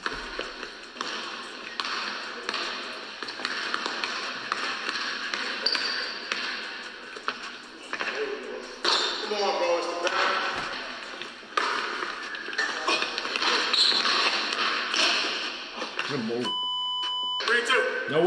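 A basketball bouncing and being dribbled on a hardwood gym court during a one-on-one game, with voices in the background. Near the end there is a steady beep lasting about a second.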